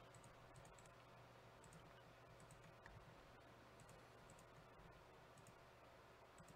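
Near silence: room tone with a scatter of faint computer mouse clicks.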